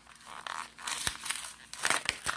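Plastic blister packaging and its cardboard backing crinkling and tearing as a miniature toy gun is worked out of its card, in short crackly bursts with a sharp click about a second in.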